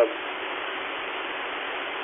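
Steady hiss of a two-way radio channel held open with no voice, cut off above the radio's narrow audio band.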